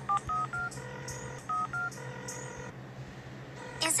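Telephone keypad dialing tones: a quick run of three short beeps, then two more about a second and a half in, with two longer steady tones between them.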